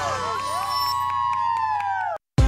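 Excited high-pitched screaming from a group of women: short squeals, then long held screams that sag in pitch near the end, over a low steady music bed.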